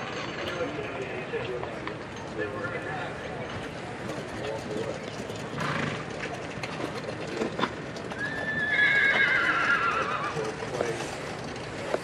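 A horse whinnies once, a long trembling call about eight and a half seconds in that slowly falls in pitch, over low background talk.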